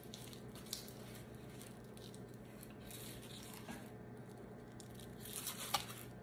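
Nylon gun belt with holster and pouches being handled: faint rustling of the webbing with a few light clicks, the sharpest near the end, over a steady low hum.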